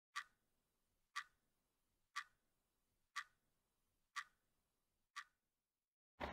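A clock ticking: six sharp ticks, one a second, the last a little fainter.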